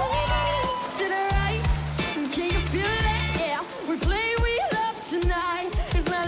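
A young girl singing a pop song into a microphone over a band backing of bass and drums, her voice sliding and wavering through drawn-out notes without clear words.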